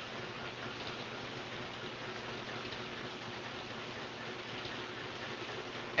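Steady, even hiss of rain falling outside the room, with no other sound.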